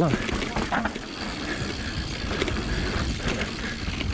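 Mountain bike rolling fast down a dirt trail: a steady rush of tyre and wind noise, with small rattles and knocks from the bike over bumps and stones.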